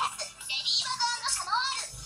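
Television programme audio played through a TV speaker: music with a high-pitched, singing-like voice.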